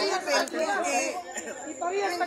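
Speech only: people talking, with voices overlapping.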